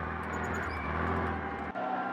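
A motor vehicle's engine running with a steady low hum; the sound shifts abruptly near the end.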